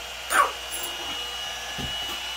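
Electric heat gun running and warming up: a steady rush of blown air with a thin, high, steady whine. A brief sharp sound about half a second in is the loudest moment, and a soft low thump comes near the end.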